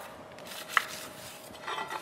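Fingers rubbing oil over the inside of a metal baking tray to grease it: a faint, scuffing rub on the metal, with one light click about three quarters of a second in.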